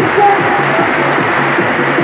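Mandarin pop song over an electronic backing track: a singer holds the last word of a line, then the backing track carries on alone with a steady beat and bass line.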